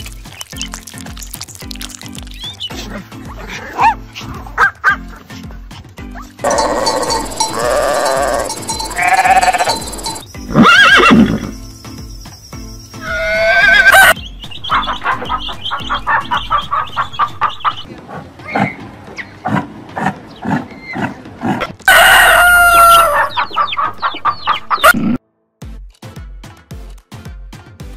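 Background music with a steady beat, overlaid with a string of farm-animal calls. The calls are loud and drawn out from about six to fourteen seconds in, shorter and repeated just after, and there is one long call falling in pitch near the end.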